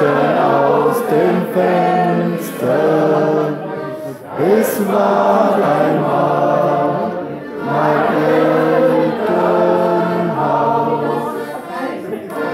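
A group of voices singing together in chorus, in phrases of long held notes.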